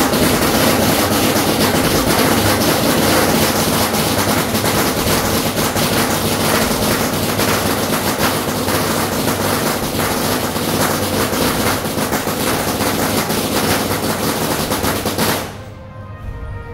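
Loud, dense, continuous clattering din of a temple procession, rapid sharp strokes packed close together, cutting off suddenly near the end.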